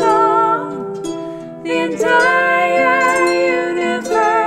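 A woman singing a slow folk song to her own plucked harp, the voice wavering with vibrato. The sound eases off about a second in, and the voice comes back in near the two-second mark.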